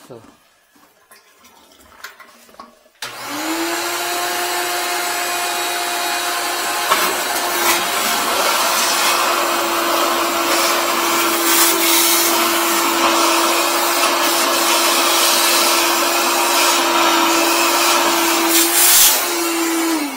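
Wet/dry shop vacuum switched on about three seconds in, running loud and steady with a motor whine, sucking through a hose and tube pushed into a toilet's trap at an object jammed sideways there; the object stays stuck. It is switched off at the end.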